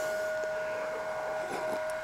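A steady, high-pitched whine in the background, with a few faint small sounds about one and a half seconds in as a mug is sipped from.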